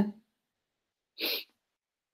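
A single short, sharp breath through the nose, about a second in, taken in a pause between spoken lines.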